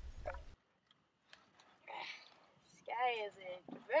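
A voice exclaiming from about three seconds in, after the background cuts out abruptly about half a second in and leaves a near-silent gap.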